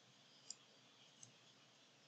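Two faint computer mouse clicks, about three-quarters of a second apart, over faint steady hiss.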